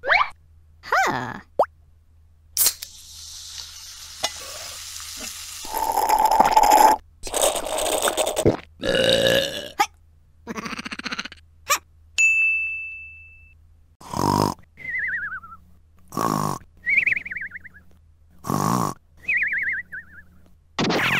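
Cartoon sound effects dubbed over clay stop-motion characters: a string of short grunts and burp-like vocal noises, a single ringing ding about twelve seconds in, and short falling warbly whistles in the last few seconds.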